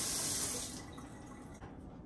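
Water from a pull-down kitchen faucet's spray head running in a stream into a stainless steel sink, then shut off about a second in.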